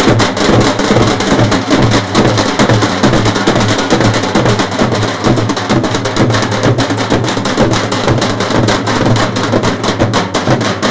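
Dhol drums played live in a fast, unbroken beat, stroke after stroke with no pause.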